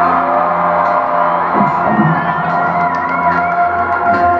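Live concert music heard from the audience: steady held droning notes, with the crowd cheering and a few whoops in the middle.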